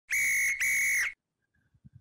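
Whistle blown in two short blasts, back to back, each about half a second at the same steady high pitch, as a transition sound effect.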